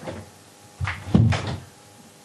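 A couple of dull knocks and bumps about a second in, from a hand handling a wooden bedside cabinet and the metal gas bottle beside it.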